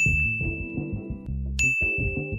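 Two bright, single-pitch 'ding' chimes, each struck sharply and left ringing, the second about one and a half seconds after the first. Quieter background music with a bass line runs underneath.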